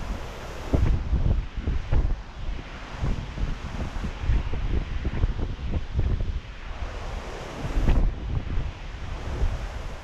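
Wind buffeting the microphone in irregular gusts over a steady rushing noise of wind and sea.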